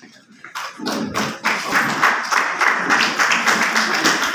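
Audience applauding: a sparse clap or two about half a second in, building within a second into steady clapping.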